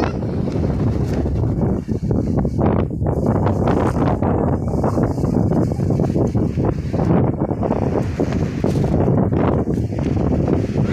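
Wind buffeting a phone's microphone: a loud, steady low rumble with a brief lull about two seconds in.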